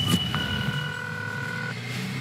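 Low rumble of street traffic, with one steady electronic tone lasting just over a second, starting about a third of a second in: a telephone ringing tone in a payphone handset.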